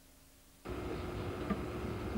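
Near silence, then about two-thirds of a second in a steady background hiss with a faint hum cuts in abruptly, with one small click about a second and a half in.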